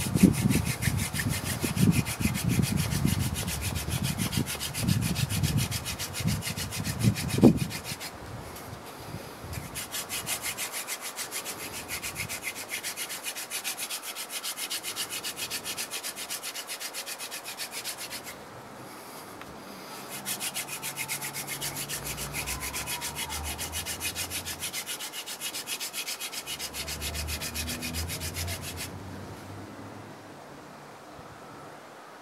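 Hand-drill friction fire: a tape-wrapped spindle twirled back and forth between the palms, its tip grinding into a willow hearth board with a fast, even rasping rub as it makes hot wood dust. There are heavy low thumps through the first eight seconds, and the rubbing pauses briefly about eight and about eighteen seconds in, then stops near the end.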